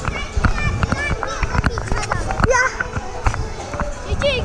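Busy trampoline park: many children's voices shouting and squealing over repeated thuds of bodies landing on trampoline beds.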